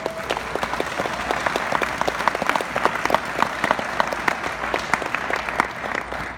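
Audience applauding, many hands clapping at once; it breaks out suddenly and keeps up steadily.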